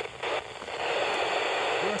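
Hiss of open FM receiver noise from a Yaesu FT-817ND transceiver's speaker, tuned to the SO-50 satellite's downlink near the end of its pass. It drops out briefly a few times in the first half second, then runs steady.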